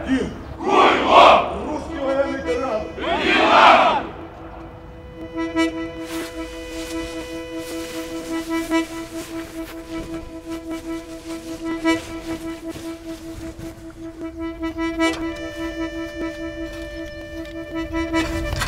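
A crowd of soldiers shouting a chant in unison, two loud shouts in the first four seconds. The chant is followed by a steady, held musical drone with overtones that carries on to the end.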